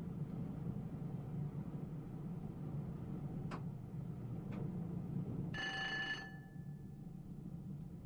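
Low steady rumble of an electric train running on the rails, heard from the driver's cab as it slows into a station. Two faint clicks come about three and a half and four and a half seconds in. Near the end a short, steady, pitched ringing tone like a cab bell or buzzer sounds for under a second.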